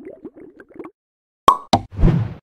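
Cartoon-style sound effects for an animated end card: a quick run of small bubbly plops, then two sharp hits near the end, the first the loudest.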